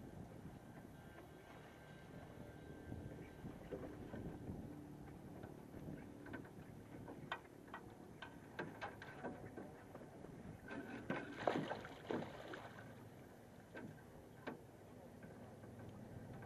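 Handling noises of a netted salmon at the side of a small aluminum boat: scattered sharp clicks and knocks, with a louder cluster about eleven to twelve seconds in, over a steady low background of water and wind.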